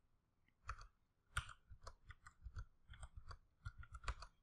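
Faint computer keyboard and mouse clicks, a dozen or so short, irregular clicks as numbers are typed into form fields one after another.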